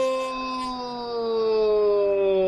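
A male football commentator's long, drawn-out goal cry, one held "gooool" that slowly sinks in pitch, calling a goal.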